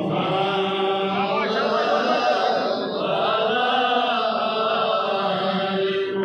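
Men's devotional chanting, one continuous line of long, held notes that slowly rise and fall in pitch.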